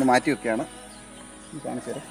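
A man speaking briefly twice, over a steady high-pitched hum of insects.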